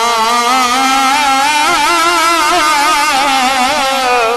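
A man's voice singing a naat, holding one long note through a microphone. The note starts steady and then, from about half a second in, wavers quickly up and down in an ornamented vibrato.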